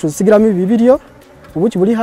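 Honeybees buzzing close by in two loud passes, the first through about the first second and the second near the end, the pitch swooping up and down as they fly past.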